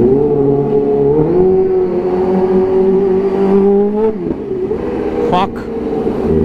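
Kawasaki Ninja H2's supercharged inline-four engine pulling in gear at low speed. The engine note steps up about a second in, climbs slowly, then drops off near four seconds, with a quick rev about five seconds in.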